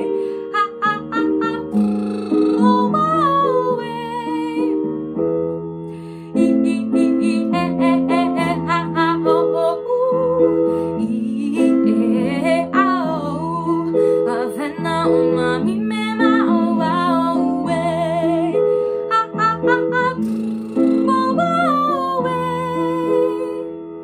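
A young woman singing a vocal warm-up exercise over a plucked-string accompaniment: bursts of short, punchy syllables and quick runs of notes alternating with held notes with vibrato. The exercise trains breath support, clear articulation of strings of vowels, and fast notes at different pitches.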